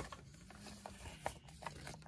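Faint handling sounds: a few scattered light clicks and rustles of small plastic miniature packaging being handled, over a faint low hum.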